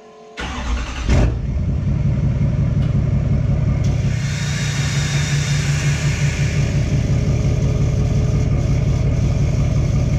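A GMC Sierra's Duramax turbo-diesel V8 cranks and catches about a second in, then settles into a steady, loud idle. A high hiss joins the idle from about four seconds in.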